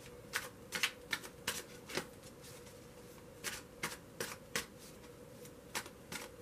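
A tarot deck being overhand-shuffled by hand: a series of short, irregular slaps as packets of cards drop onto the pile, with a pause of about a second and a half in the middle.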